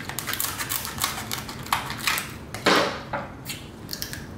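Kitchen scissors snipping down the back of a cooked lobster's tail shell: a quick run of sharp, crunchy clicks, with a louder crack a little under three seconds in.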